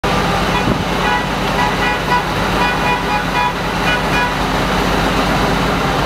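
Motor vehicle engine running with a rough, pulsing rumble, with short high toots repeating over it.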